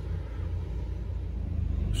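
Steady low background rumble with no other distinct event; it takes on a fine regular pulsing late on.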